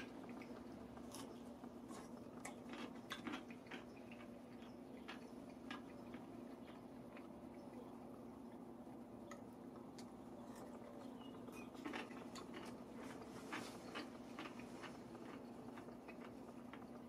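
A pickle wedge being bitten and chewed by a man wearing dentures: faint crunching and wet clicking in irregular clusters, loudest about three seconds in and again around twelve seconds, over a steady low hum.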